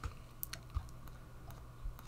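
Computer mouse clicking: a few faint, sharp clicks, the first right at the start, over a low steady hum.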